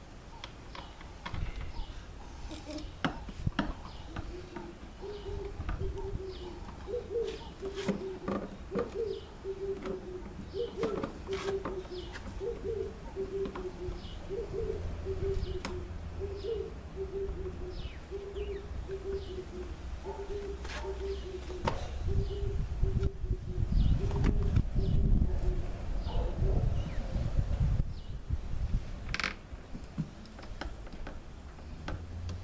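A bird calling: a long, even series of short low notes, about two a second, starting about five seconds in and stopping a few seconds before the end. Scattered clicks and knocks throughout, and a low rumble in the last third.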